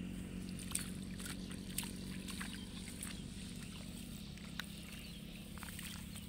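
Hands weeding in a flooded rice paddy: short splashes and squelches as weeds are pulled from the water and mud, every second or so, over a steady low hum.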